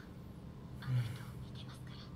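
A woman's voice from the anime speaks a short line softly in Japanese, breathy and close to a whisper, starting a little under a second in. A brief low thump, the loudest moment, comes as the line begins, over a steady low hum.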